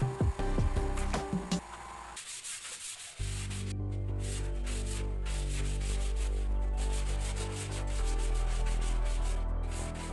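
Wood surface being hand-sanded with a sanding pad in quick back-and-forth strokes, over background music. A few knocks and clicks come in the first couple of seconds, and the sanding strokes begin about three seconds in.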